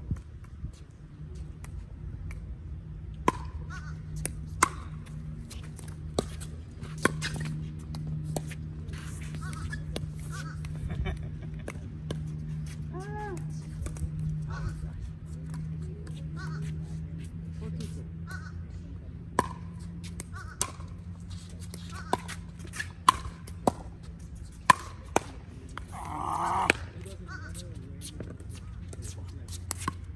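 A pickleball rally: hard paddles popping a plastic ball back and forth, in sharp single hits at irregular intervals, some a second or less apart and a cluster near the end, over a steady low hum.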